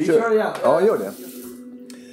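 A man's singing voice from a recorded song: a short sung phrase that ends in one long held note.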